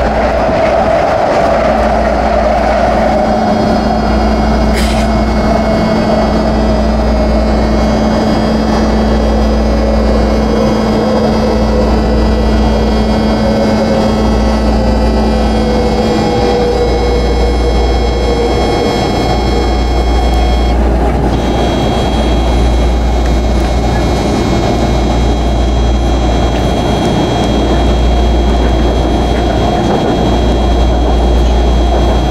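BART train running at speed, heard from inside the car: a steady rumble of wheels on track with a whine that slowly falls in pitch over the first twenty seconds. There is a steady hum that stops about sixteen seconds in, and a single sharp click about five seconds in.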